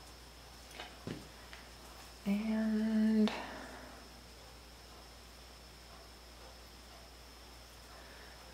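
Mostly quiet room tone with a few faint light clicks as a small wooden piece and a mechanical pencil are handled. About two seconds in, a woman hums one steady note for about a second.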